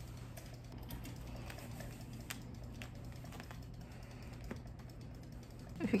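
Faint, scattered light clicks and soft rustling from hands handling a stretchy mesh wig cap as it is pulled on over the head.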